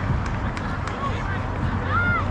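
Distant, unclear voices of players calling out across an outdoor softball field over a steady low background hum, with a few sharp clicks in the first second.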